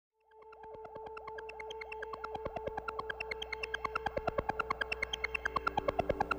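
Electronic synthesizer intro fading in from silence: a held two-note synth tone with a steady, slightly quickening train of clicks, about five to seven a second, growing louder throughout.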